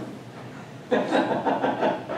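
Quiet room tone for about a second, then a person's voice talking indistinctly in a meeting room.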